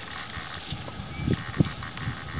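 Young horse grazing while wearing a grazing muzzle: a few soft, low thuds in the second half, the loudest near the end, over a steady hiss.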